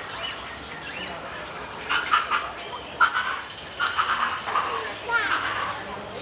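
Indistinct background voices, with short bursts of talk or calls from about two seconds in, mixed with a few short bird chirps.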